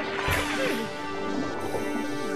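Cartoon water-splash sound effect as divers plunge into the sea, followed by a low rumble as they go under, over background music with sustained tones.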